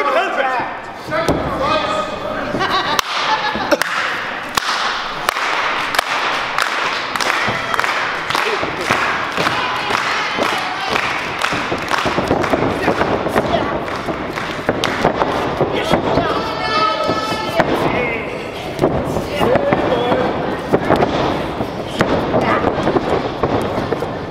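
Small crowd talking and calling out indistinctly, with repeated thuds and knocks from wrestlers moving on the ring.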